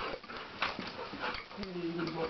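A dog whimpering as it is picked up and handled, with a short pitched whine near the end among rustling and small knocks.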